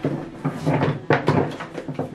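A string of hard plastic knocks and clatters as a Numatic cylinder vacuum cleaner's body and lid are handled.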